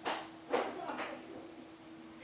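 Two quick computer mouse clicks about a second in, over a faint steady hum and background household noise.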